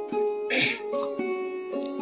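Background music of sustained plucked-string notes, with a short hissy sound about half a second in.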